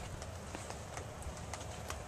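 Footsteps and handling noise of a handheld camera: irregular light clicks over a steady low hum.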